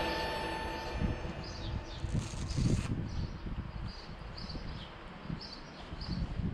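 Wind buffeting an action camera's microphone outdoors, with small birds chirping several times in short high notes. The last of the background music dies away in the first second, and a brief hiss comes about two seconds in.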